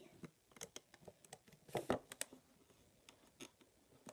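Small plastic clicks and taps of fingers handling a rubber-band loom's pegs and bands while a clip is fitted. The clicks come irregularly, and the loudest cluster comes about two seconds in.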